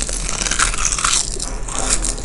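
A person biting into and chewing a sheet of crispy roasted seaweed (nori): a run of dry crunches with a short lull midway.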